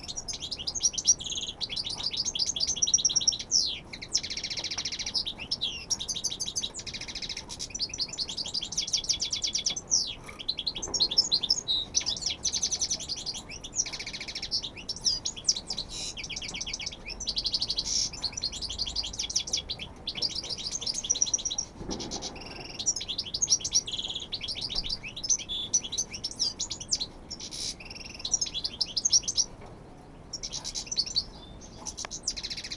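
Caged European goldfinch singing a long, fast twittering song of rapid trills and buzzy notes, with only brief breaks.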